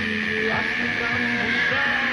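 Gohan's Super Saiyan 2 transformation scream from the Catalan dub of Dragon Ball Z: one long, high-pitched cry held steady without a break, over the scene's dramatic background music.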